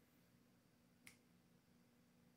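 Near silence: room tone with a faint low hum, broken by one short, faint click about halfway through.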